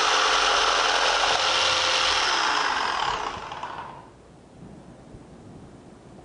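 Electric jigsaw running at speed, its reciprocating blade cutting a wooden board with a loud, steady buzz. About three seconds in, the sound dies away over roughly a second.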